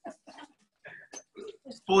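A man's voice, faint and off-mic, in short fragments, becoming loud and clear right at the end as he starts speaking near the microphone.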